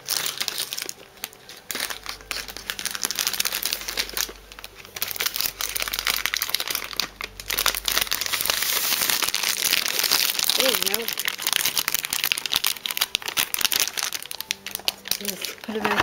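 Packaging crinkling and rustling continuously as it is handled, busiest in the second half.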